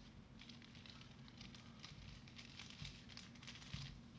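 Faint crackling rustle of gloved hands handling a trading card, with small scattered clicks throughout and a soft knock near the end.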